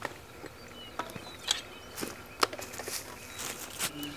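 A series of light, separate knocks and clicks from handling and moving about outdoors, more of them near the end, with a few faint bird chirps.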